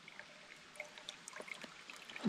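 Faint trickle of water being squeezed from a soft bag through a backpacking squeeze filter into a metal water bottle, with a few small scattered ticks.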